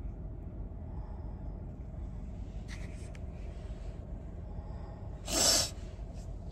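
Low steady hum inside a car cabin with the engine idling, with faint rustling. Near the end comes one short, loud, breathy burst like a snort or sniff.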